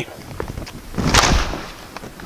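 Fukuro shinai (leather-covered split-bamboo practice swords) striking in sparring: a couple of light knocks, then a loud, sharp hit with a short rattle about a second in, over thuds of footwork on a wooden floor.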